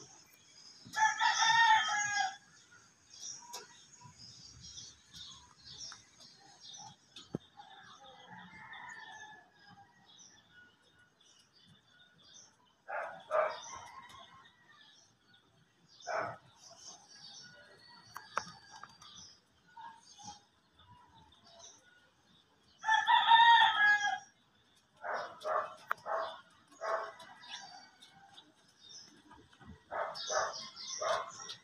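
A rooster crowing twice, once about a second in and again near 23 seconds, with shorter bird calls between and small birds chirping faintly throughout.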